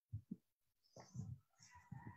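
Near silence: room tone with a few faint, short low sounds.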